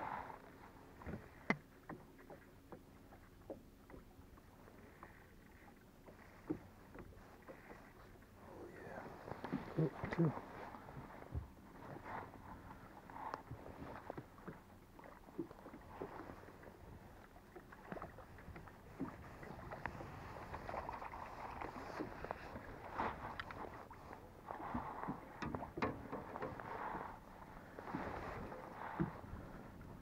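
Small waves lapping against the side of a bass boat, with scattered knocks and clicks of fishing tackle and an aluminium landing-net pole being handled. A faint steady hum runs through the first half.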